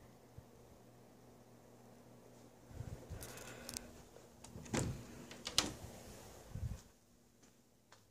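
Faint steady low hum of a Harbor Breeze ceiling fan running on high, with a few knocks and scrapes between about three and seven seconds in. The hum drops away near the end.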